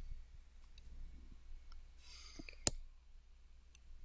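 Quiet clicks and taps of a stylus on a tablet screen while drawing a curve, with one sharper click about two and a half seconds in. A low steady hum lies underneath.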